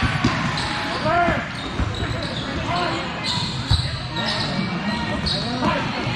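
Volleyball gym ambience: repeated thuds of balls being hit and bouncing, with short sneaker squeaks on the hardwood floor and voices calling out, all echoing in a large hall.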